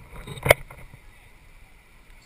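A single sharp knock about half a second in, over low wind and water noise.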